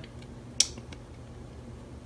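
A quiet room with a faint low hum and a single sharp click about half a second in.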